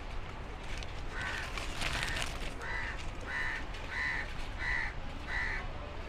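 A crow cawing over and over: a steady series of short, evenly spaced caws, about one and a half a second, starting about a second in.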